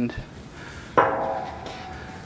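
A steel leg clanks once against the steel stand frame about a second in, the metal ringing briefly as it fades.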